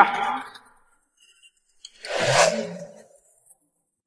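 A single short whoosh about two seconds in, swelling and fading within about a second, of the kind used as a transition sound effect between scenes.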